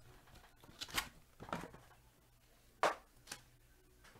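Foil-wrapped trading card packs being handled and set down on a mat: four short rustles and taps, the loudest about three seconds in.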